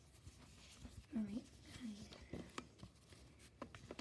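Quiet, low murmured speech with light rustling and small clicks as a plastic baby doll is handled and pants are pulled onto it.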